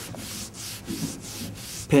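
Paper rustling as pages are handled at a lectern, picked up by the microphone as a run of short, rapid brushing strokes.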